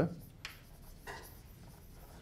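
Chalk writing on a blackboard: faint, short scratching strokes as a word is written out.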